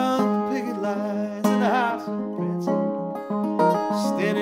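Acoustic guitar playing an instrumental passage of a folk song: plucked notes and chords ringing over a steady low bass note, with a brief wavering note about a second and a half in.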